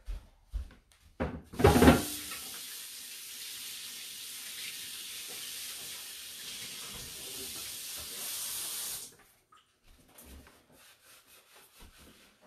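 Kitchen tap running water into a sink for about seven seconds before it is shut off sharply. A loud knock comes just as the water starts.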